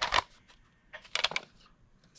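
Plastic 8-track tape cartridge being turned over in the hand: a brief noise at the start, then a short cluster of light clicks and rattles about a second in.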